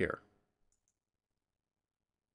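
Near silence after a spoken word ends, with one faint computer mouse click a little under a second in.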